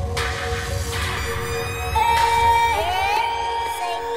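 Electronic intro music made of held synth tones. A loud high held tone enters about halfway, and pitches slide up and down near the end as it builds toward a drop.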